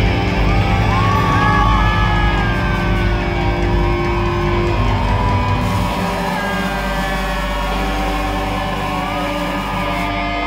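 Live hard-rock band playing loud: distorted electric guitars over drums, with long bending notes sliding above the held chords.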